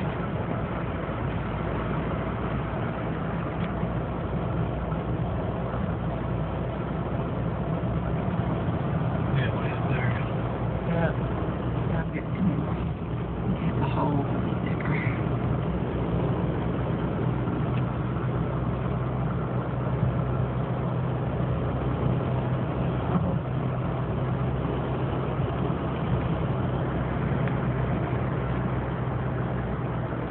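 Steady low engine hum and road noise of a car descending a winding mountain road, heard from inside the cabin.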